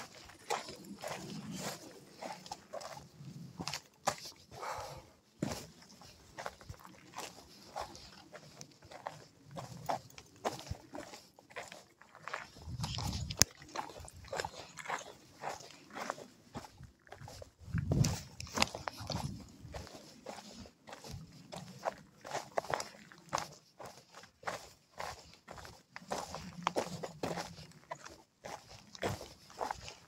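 Footsteps of a hiker walking down a rocky, gravelly mountain trail: an irregular run of crunches and scuffs. A few louder low rumbles come through, the strongest about halfway through and again a few seconds later.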